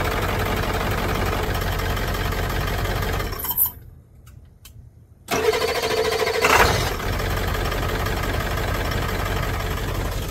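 Ford F-250 pickup engine idling, shut off about three and a half seconds in, then restarted on its newly fitted starter about two seconds later; it catches with a brief flare and settles back to a steady idle. The owner feels the new starter isn't quite right, perhaps a terminal not tight enough.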